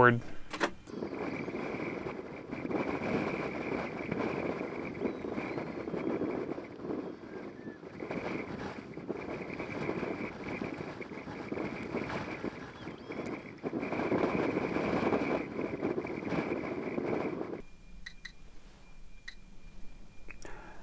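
NOAA 18 weather satellite's APT signal through an SDR receiver: FM-demodulated audio with a steady high tone over hiss, the satellite's image carrier. About three seconds before the end it drops suddenly to fainter static as the satellite sinks toward the horizon.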